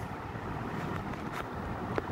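Steady background noise, a low rumble with hiss, in a pause between speech, with one faint click about a second and a half in.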